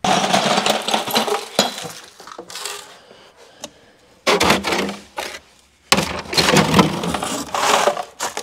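Ice cubes clinking and rattling against plastic ice-maker bins as the bins are handled and lifted out of a chest freezer, in three bursts of clatter.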